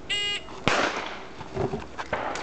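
Electronic shot timer giving its short, high start beep for a USPSA stage. About half a second later comes a louder sharp burst with a short trailing rush.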